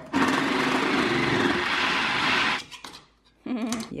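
Food processor running for about two and a half seconds, its blade chopping frozen tuna into icy shavings, then stopping suddenly.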